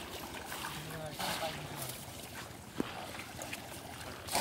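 Water sloshing and splashing as people wade through a shallow muddy pond and plunge bamboo polo fish traps into it, with a louder splash about a second in and a sharp click just before three seconds.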